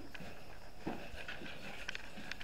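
Low, even background noise with a few faint, sharp clicks, a couple of them close together near the end.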